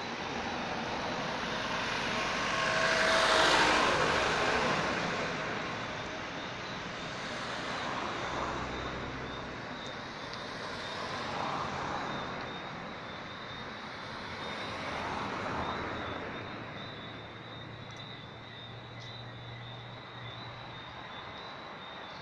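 Cars passing on the road one after another: the first and loudest goes by about three and a half seconds in, with quieter passes following every few seconds.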